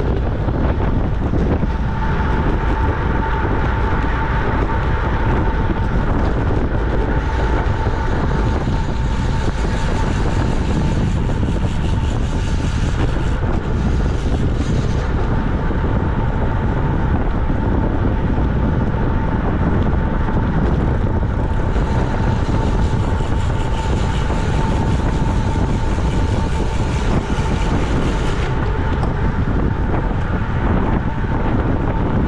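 Wind rushing over the microphone of a bike-mounted camera at racing speed, about 23 mph, a steady rumble mixed with road-bike tyre noise on asphalt. A thin steady whine sits alongside it from about a second in.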